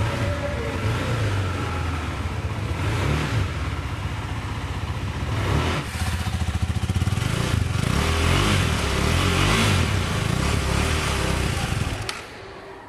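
KTM 390 Duke's 373 cc single-cylinder engine running in neutral and heard at its stock exhaust silencer: a steady idle, with the revs raised several times.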